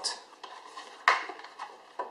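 Clear plastic packaging tray crinkling and clicking as a portable USB charger is pulled out of it, with one sharp click about a second in.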